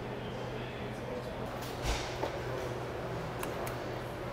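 Steady low hum of room tone, with a soft thump about two seconds in and a couple of faint ticks near the end.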